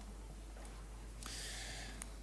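Quiet room tone with a faint steady low hum, and a soft breath drawn in over the last second.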